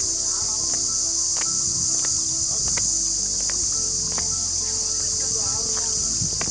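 Insect chorus: a steady, high-pitched continuous buzz that does not let up.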